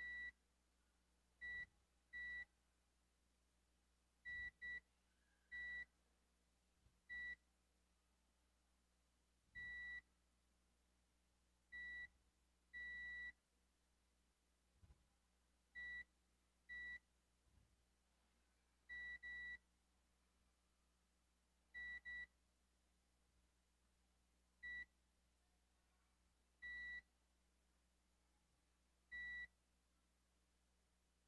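Multimeter continuity beeper sounding in short beeps of one steady high tone, about nineteen at irregular intervals, some longer than others, as the probe is touched pin by pin along a graphics card's PCIe edge connector. Each beep marks a pin that reads as connected while the lines are checked for an open, dead one.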